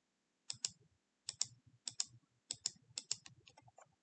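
Clicking at a computer: about five pairs of sharp clicks, each pair split by a fraction of a second and the pairs about half a second apart, then a few lighter ticks near the end.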